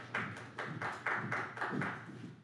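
A few people clapping, about four claps a second, dying away just after the end.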